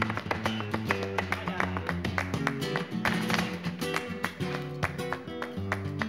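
Flamenco guitar accompaniment for a granaína, with the palmeros' sharp handclaps (palmas) striking many times through it.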